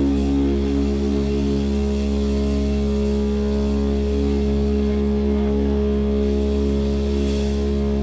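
Live doom-metal band letting a distorted electric guitar and bass chord ring out as a steady drone, with little drumming under it.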